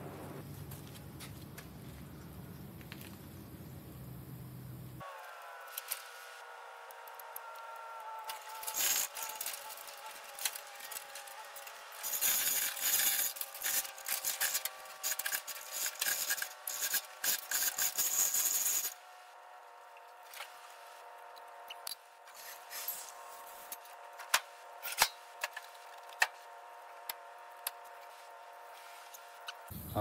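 Clattering and rattling of hoist chains, sheet metal and wood as a bare car body is lowered onto a wooden wheeled dolly: a dense stretch of rattling in the middle, then scattered sharp clicks near the end.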